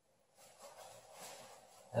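Faint rustling of a textile motorcycle jacket and its zip-in vest being handled, starting about half a second in.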